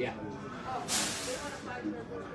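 A short, loud hiss about a second in, lasting well under a second, over faint background voices.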